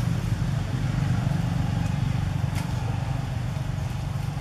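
A steady low rumble, like a running engine, with a faint click a little over halfway through.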